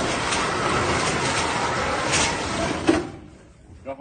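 Ride-on tracked robot turning in place on concrete: a steady mechanical grinding and rattling of its drive and rubber tracks, which stops about three seconds in. A brief voice follows near the end.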